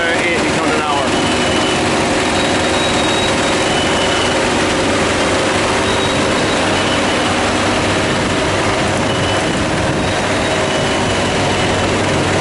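Sandvik QA440 double-deck mobile screening plant running while screening damp lime: a loud, steady machine noise of its engine with the rattle of its two vibrating screen boxes, with a low steady hum underneath.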